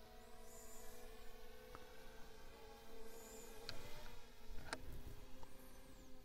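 Faint, steady multi-tone whine of a DJI Mini 3 Pro's propellers with the drone in flight a short way off. The pitch wavers briefly about two thirds through as the drone changes manoeuvre. A few light clicks and two faint high chirps sit over it.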